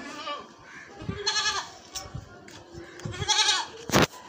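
Makhi Cheeni goats bleating: two wavering bleats, one just over a second in and another about three seconds in.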